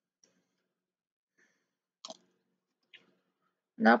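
Thin 24-gauge gold craft wire being handled and snipped with flush cutters: a few faint, short clicks, the sharpest about halfway through. A woman's voice begins right at the end.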